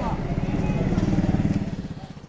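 A motor vehicle's engine running with a fast, even pulse, fading near the end.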